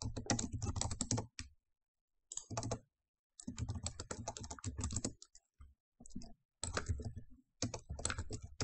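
Typing on a computer keyboard: quick runs of keystrokes with short pauses between them, the longest about two seconds in.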